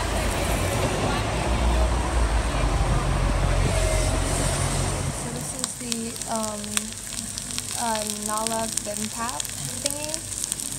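Street traffic with a low engine rumble from passing buses; about five seconds in it gives way to the crackling sizzle of bibimbap cooking in a hot stone bowl, many small sharp crackles.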